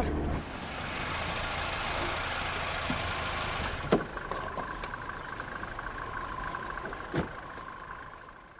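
A car's engine running amid street traffic noise as it draws up. A car door unlatches with a sharp click about four seconds in and shuts with a thud about seven seconds in, while a steady high tone holds through the second half.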